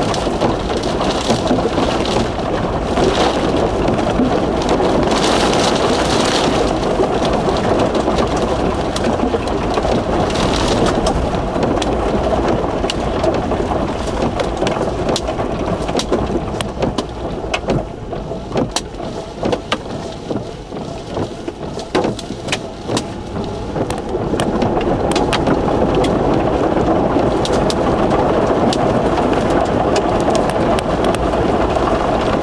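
Steady wind and rain noise from the thunderstorm around a tornado, with many sharp ticks of drops striking. It eases somewhat in the middle and picks up again near the end.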